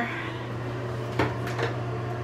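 A steady low hum with two light knocks a little past the middle.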